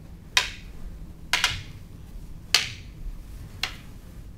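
Wooden canes clacking against each other in a partner block-and-counter drill: five sharp clacks at roughly one-second intervals, two of them coming in quick succession about a second and a half in.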